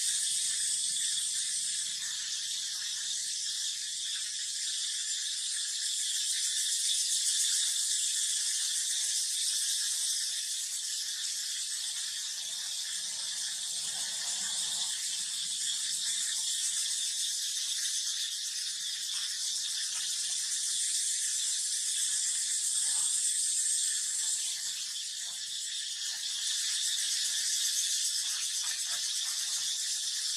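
Steady high-pitched insect chorus, such as cicadas, with faint crackling of dry leaves now and then.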